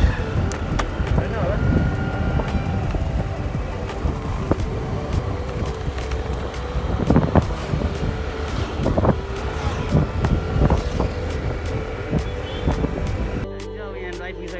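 Motorbike ride heard from the pillion: the engine running, with road rumble and wind buffeting the microphone. Near the end it cuts to music.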